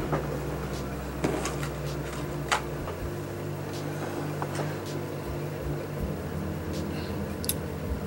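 A few light clicks and knocks of hands handling the plastic and metal parts of an LED TV's back, over a steady low hum.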